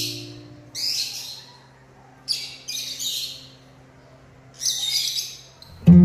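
Lovebirds giving shrill, chattering calls in three short bursts, over the fading tail of an acoustic guitar track that comes back in loudly just at the end.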